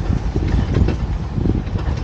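Open-sided safari truck driving on a rough dirt track: a low rumble with irregular jolts and rattles.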